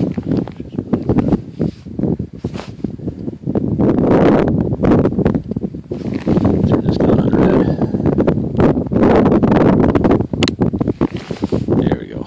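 Wind buffeting the microphone in surging gusts, with scattered short clicks and knocks of handling.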